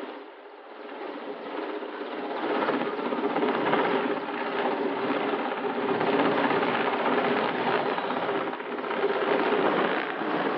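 Large helicopter hovering low overhead, its rotor chopping rapidly over a steady engine whine. It dips briefly just after the start, then grows louder and holds.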